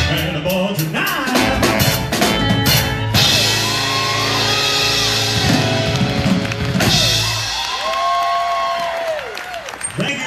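Live rock and roll band with electric guitar, bass, saxophone, keyboards and drum kit playing the end of a song. Hard drum hits for the first few seconds give way to a long held final chord with ringing cymbals. Near the end the band drops out under a male singer's long held notes.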